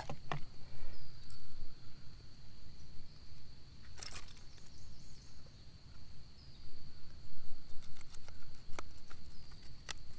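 Scattered clicks and knocks of fishing tackle being handled on a bass boat's deck, the sharpest about four seconds in and a few more near the end. Under them runs a steady high-pitched whine and a low rumble.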